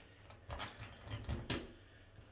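Light clicks and scrapes of a metal spring toggle anchor on its screw being pushed into a drilled hole in plasterboard, with the sharpest click about one and a half seconds in.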